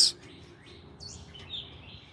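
Faint birdsong: a series of short high chirps, with one quick downward-sliding note about a second in.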